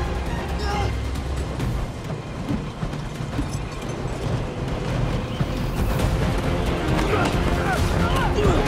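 Action-film trailer soundtrack: music mixed with layered sound effects, with a deep rumble in the first second or so and the level building again towards the end.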